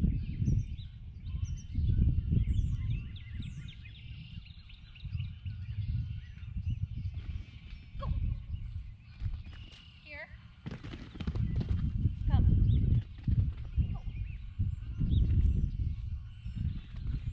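Wind buffeting the microphone in uneven gusts, with birds chirping and calling in the background.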